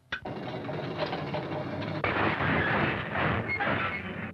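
Cartoon sound effect of wheeled cages rolling: a steady, dense clattering rumble that gets a little louder about halfway through.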